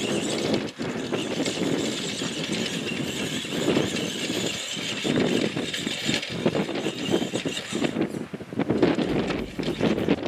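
Tamiya Bullhead 1:10 electric RC monster truck driving over rough grass: its motor and gearbox running with uneven surges as the throttle is worked, tyres churning through the grass.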